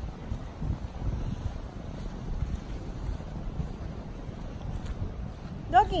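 Wind buffeting the microphone: an uneven low rumble with nothing clear above it.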